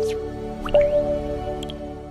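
Short logo-intro jingle of plucked, drip-like synth notes, each a step higher than the last and ringing on. A new, higher note comes with a quick rising swish about three-quarters of a second in, then the jingle fades with faint high sparkles near the end.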